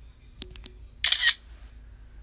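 A phone's camera shutter sound, one short snap about a second in, as a screenshot or picture is taken. A few faint clicks come just before it.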